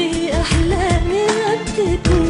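A woman singing an Arabic pop song live with a band, stretching one long, wavering, ornamented note over a steady drum beat.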